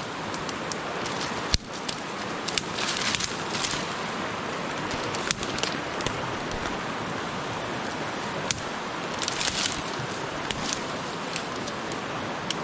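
Branches and leaves rustling and twigs snapping as thick brush is pushed aside by a gloved hand. A sharp knock comes about a second and a half in, and louder rustles come around three seconds and again near ten seconds, over a steady rushing background.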